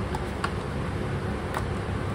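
Two faint clicks from the plastic lid of a ground-cinnamon container being worked open, over a steady low room hum.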